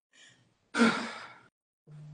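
A person sighing: one breathy exhale about a second in that fades away over half a second, with a short low hum near the end.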